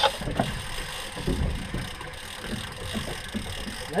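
Fishing reels being wound in by hand: irregular mechanical clicks over a low rumble.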